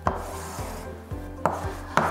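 Chalk drawing lines on a chalkboard: a sharp tap as the chalk meets the board, another about a second and a half later, with faint rubbing strokes between.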